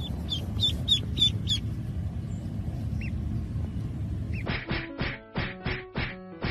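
A duckling peeping: a quick run of about five short, high chirps in the first second and a half and one more about three seconds in, over a low rumble. About four and a half seconds in, it cuts to music of evenly spaced plucked notes.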